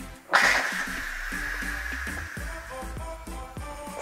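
Steam venting from a 6-quart Instant Pot Lux's pressure release valve during a quick release after cooking. It starts abruptly about a third of a second in, strongest at first, then settles into a steady hiss that thins out in the second half. Background music plays underneath.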